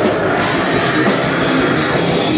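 Heavy metal band playing live at full volume: electric guitar and a drum kit with rapid, continuous drum hits.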